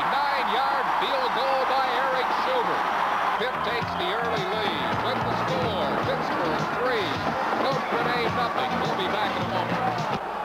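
Football stadium crowd noise, many voices at once, just after a made field goal. About three and a half seconds in, music with a stepped bass line comes in under the crowd.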